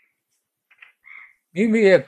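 A pause in a man's talk, then, about one and a half seconds in, his voice comes back loud with a drawn-out syllable whose pitch wavers, running on into speech.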